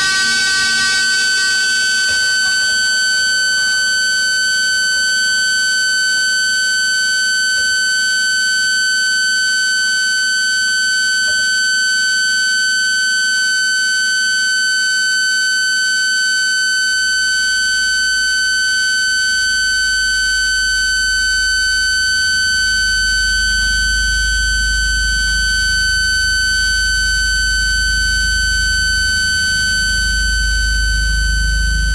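Live electronic drone music: a high, unchanging electronic tone held steadily throughout, with a deep bass drone swelling in about halfway through and growing louder toward the end.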